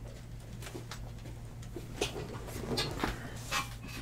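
Stack of trading cards being picked up and handled, a few short clicks and rustles in the second half, over a steady low electrical hum.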